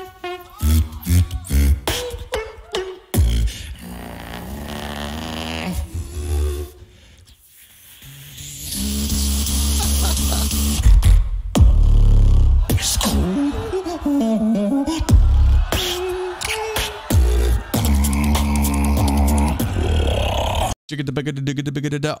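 A solo beatboxer performing a melodic routine: deep vocal bass under pitched melodic lines and sharp percussive clicks, with quick six-note runs that layer several sounds at once. The sound drops low briefly about seven seconds in and cuts out for a moment near the end.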